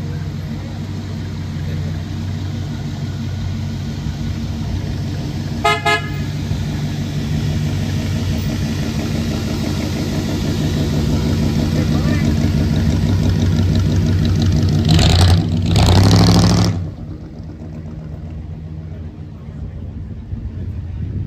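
A customized 1941 Ford's engine rumbling steadily at low speed, with a short car-horn toot about six seconds in. About fifteen seconds in come two loud bursts, then the rumble falls away as the car pulls off.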